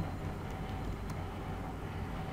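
Steady low background hum with a few faint computer-keyboard clicks as a word is typed.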